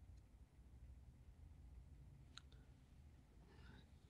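Near silence: faint room tone of a quiet call line, with one faint click a little past halfway.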